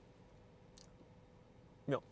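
Quiet interior room tone of a parked car, with a faint steady hum and one faint click a little under a second in. A man says a short 'ja' right at the end.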